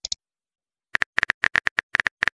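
Phone keyboard typing clicks from a texting-story app. About a second in, quick short clicks start, about seven or eight a second, as a message is typed out letter by letter.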